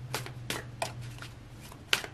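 A deck of tarot cards being shuffled by hand, giving a few short sharp card snaps, the loudest near the end, over a faint steady low hum.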